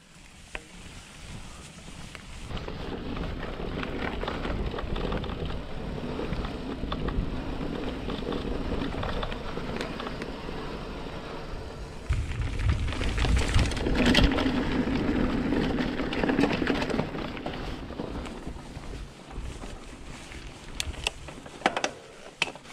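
Mountain bike riding over bumpy grass: tyres rumbling and the bike rattling, with wind buffeting the microphone. It swells about two seconds in, is loudest past the middle and eases near the end.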